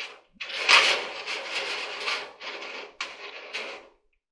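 Scraping and rattling as a coiled clothes-dryer heating-element wire is pressed by hand into its round sheet-metal heater pan. It comes as several stretches of rubbing with a few sharp clicks.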